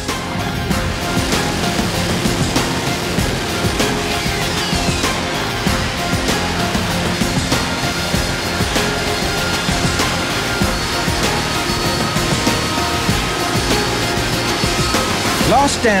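Harrier jump jet hovering, its Rolls-Royce Pegasus engine giving a loud, steady jet noise, with a falling whine about four seconds in. Background music plays along with it.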